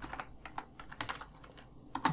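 Computer keyboard typing: a run of quick, uneven keystrokes as a word is typed.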